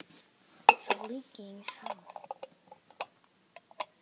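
A girl's short "oh" about a second in, among a scatter of small, sharp clinks and clicks from hard objects being handled at close range.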